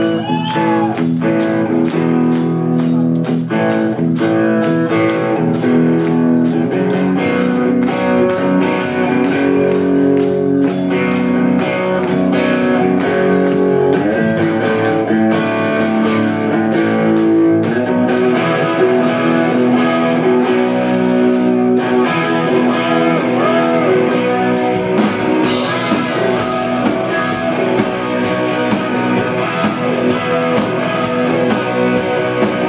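Live rock band playing a slow blues-rock instrumental passage: electric guitars hold chords over a steady drum beat of about two strokes a second. Bending, wavering guitar notes come in around the second half.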